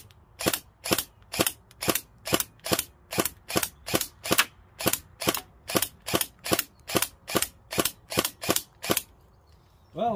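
Airsoft gun firing metal 6 mm BBs in a steady string of about two dozen sharp shots, two or three a second, stopping about nine seconds in.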